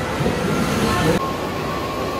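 Roller coaster train rolling along its track with a loud, rumbling noise, cutting off abruptly a little over a second in.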